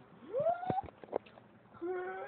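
A high-pitched cry that rises and then holds, like a meow, followed by a couple of clicks and a second wavering cry near the end.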